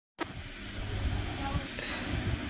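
A sharp click just after the start, then a steady low rumble with a few faint indistinct sounds over it.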